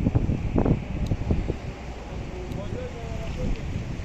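Gusty wind buffeting the microphone in a strong lodos storm, heard as an uneven low rush throughout. Voices talk nearby in the first second or so, and a fainter voice comes in later.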